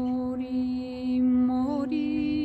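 A woman singing an Armenian lullaby (oror) in long held notes. Her voice wavers and steps up to a higher note near the end.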